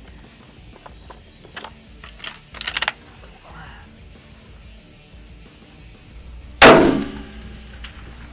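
A short run of metallic clicks about two and a half seconds in, then a single loud rifle shot from a scoped Gunwerks bolt-action rifle near the end, with a long rolling echo. The shot is fired at a steel target 640 yards away in heavy snow.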